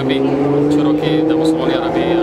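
A man talking steadily, in a language the speech recogniser does not transcribe, over the running engine of a vehicle in the street.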